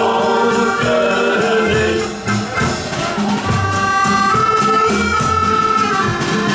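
Men's shanty choir singing a sea song over an instrumental accompaniment with drums. About two seconds in the voices stop and the accompaniment plays on alone with long held notes and a steady beat.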